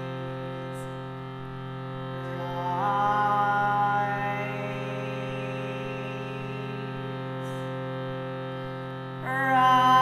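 Harmonium holding a steady reed drone. Higher melody notes slide in about three seconds in, and come back louder just before the end.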